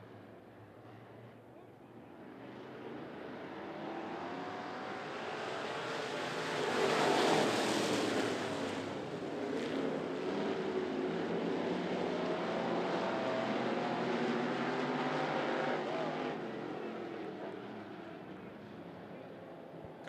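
A pack of dirt-track street stock race cars accelerating together on a green-flag restart, their engines building from about two seconds in, loudest as the field goes by around seven to eight seconds, then staying strong and fading away near the end.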